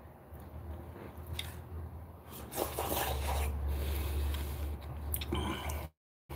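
A man chewing a mouthful of marinara meatball sandwich close to the microphone: soft, wet mouth sounds with a few small clicks. The sound cuts out abruptly just before the end.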